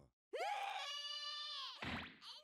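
A high-pitched female cartoon voice from an anime soundtrack lets out one long shriek of surprise, held steady and dropping in pitch as it ends.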